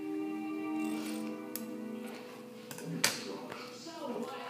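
Background music with held tones, and two sharp snips of scissors cutting duct tape about one and a half and three seconds in, the second one louder.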